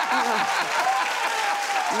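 Studio audience applauding, with voices sounding over the clapping.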